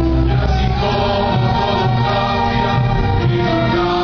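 Orchestra playing live, the strings holding sustained chords; the deep bass note drops out about a second in.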